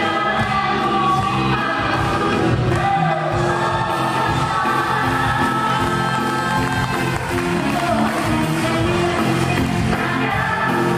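Stage-musical cast singing together in chorus over musical accompaniment, their voices amplified through headset microphones.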